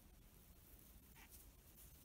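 Near silence: faint room hum with soft rustles of a metal crochet hook drawing yarn through stitches, including one brief scratch a little past a second in.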